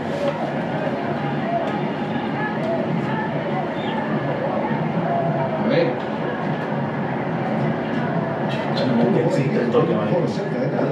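Steady murmur of a stadium crowd from a football match broadcast, with indistinct voices over it.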